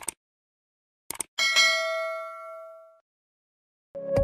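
A single bell-like ding: one struck metallic tone that rings and fades for about a second and a half, then cuts off abruptly. A couple of short clicks come just before it.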